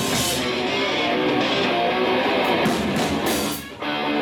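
Rock band playing live: electric guitar, bass and drums. The music drops out briefly just before the end and then comes back in.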